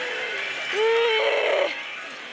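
A woman chanting a drawn-out, sing-song 'naa', held on one pitch and growing louder for about a second in the middle. Behind it is the electronic music and effects of a pachislot machine.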